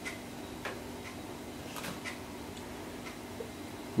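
Quiet room with a steady low hum and a few faint, irregular small clicks.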